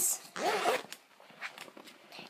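A short rasp, then faint clicks and rustles of small objects being handled, with a brief snatch of voice about half a second in.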